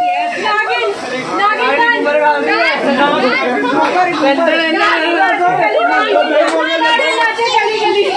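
A group of voices, children's among them, talking and calling out over one another in continuous chatter, as players shout guesses during a game of dumb charades.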